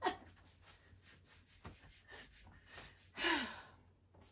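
A woman's short breathy sigh, falling in pitch, about three seconds in, over faint rustling and soft taps as she turns around in a long loose dress.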